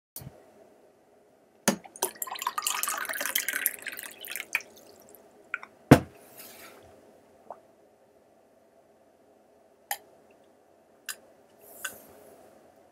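Water splashing in a drinking glass for a couple of seconds, then a single sharp knock of the glass and a few separate clicks and gulps as the water is drunk.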